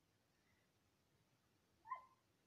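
Near silence, then one short high-pitched squeak just before the end.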